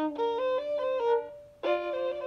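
Violin playing a slow, measured trill on a double stop: a lower note is held while the upper note alternates, the trill starting from the note above (D) rather than on the written C. A new bowed double stop begins about one and a half seconds in.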